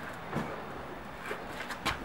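Low background with a short faint sound early on and a few light clicks near the end.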